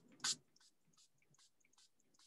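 A short hissy squirt from a non-aerosol pump spray bottle of Mod Podge Ultra glue-sealer, about a quarter second in. After it there is near silence with a few faint high ticks.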